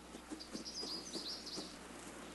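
Faint bird chirping: a short run of high, quick chirps in the middle.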